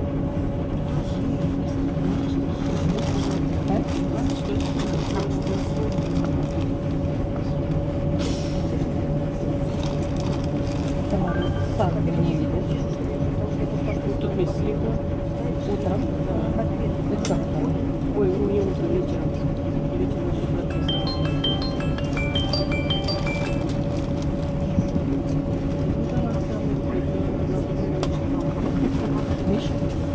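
LAZ-695N bus engine idling steadily, heard from inside the cabin, with a steady whine over the rumble. A short run of faint high electronic chirps comes about two-thirds of the way through.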